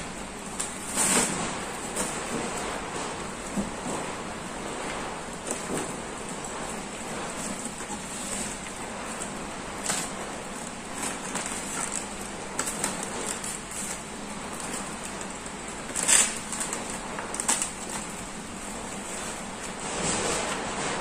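Rustling and crinkling of an insulated delivery bag's foil-lined lining and polyester fabric as hands fit and adjust its inner panels, with a few sharper crackles, the loudest about sixteen seconds in.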